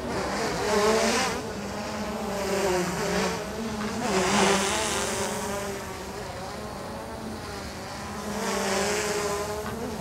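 DJI Mavic 2 Pro quadcopter in flight, its propellers giving a buzzing whine whose pitch wavers up and down as the motors change speed through banking turns. It swells louder three times, about a second in, around the middle and near the end.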